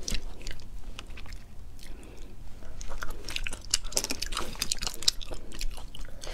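Close-miked wet mouth sounds of eating sea snails in chili sauce: sucking the meat off a toothpick and chewing, with many small clicks and smacks.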